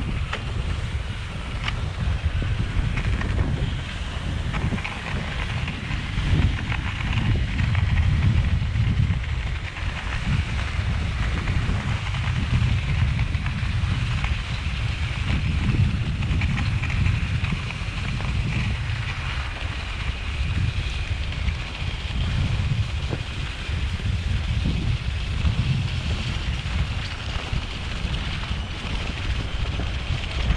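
Wind buffeting an action camera's microphone in uneven gusts, with a steady higher hiss that fits skis gliding on a packed snowmobile track.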